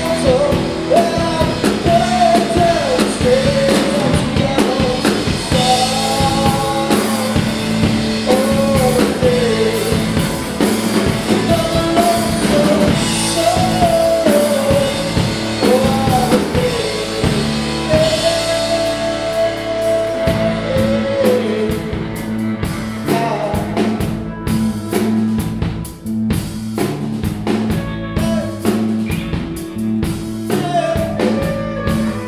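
Rock band playing live: a man singing over two electric guitars, an electric bass and a drum kit. The singing stops about two-thirds of the way through and the band plays on without vocals.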